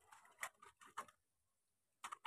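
Near silence: quiet room tone with two faint ticks about half a second apart, in the first half.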